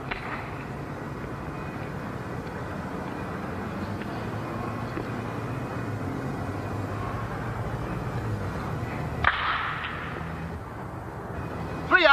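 A wooden baseball bat hits a pitched ball once, a single sharp crack about nine seconds in. A steady low hum and hiss runs underneath.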